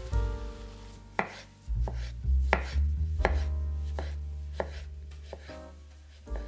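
Kitchen knife slicing a zucchini into half-rounds on a wooden cutting board, one cut roughly every 0.7 seconds, starting about a second in, over background music.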